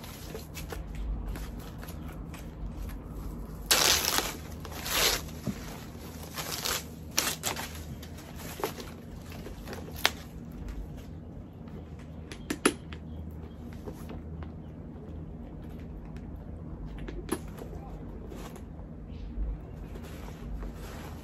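White packaging wrap rustling and crinkling as it is pulled off a new handbag's handle and strap, loudest in a handful of short bursts between about four and seven seconds in, with a few sharp clicks later on.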